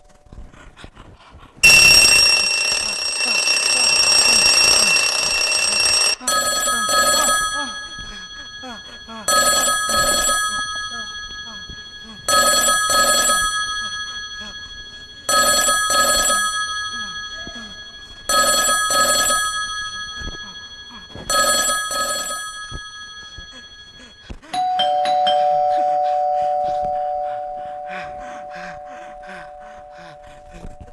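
Bell sound effects: an electric bell rings steadily for about four seconds, then a telephone rings six times, each a double ring, about three seconds apart. Near the end a two-note ding-dong chime, high then low, sounds and slowly fades.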